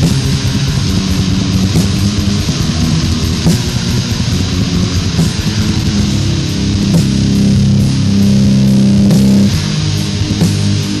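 Death/doom metal played by a full band on a 1990 demo recording: heavily distorted electric guitars with bass and drums. About six and a half seconds in, the riff gives way to long held low chords for some three seconds, and then the playing picks up again.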